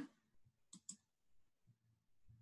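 Near silence with two faint quick clicks about three-quarters of a second in.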